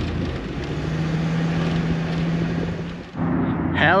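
Engine and road noise inside the cab of a 28 ft Coachmen Leprechaun motorhome driving on paved road, with a steady low drone in the middle. The sound cuts off abruptly about three seconds in.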